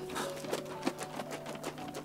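A folding hand fan being waved quickly, giving a rapid run of light clicks and flaps, over faint soft background music.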